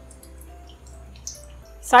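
Hot oil sizzling with scattered small crackles as a samosa-sheet box patty deep-fries in a kadai, under soft background music. A voice starts right at the end.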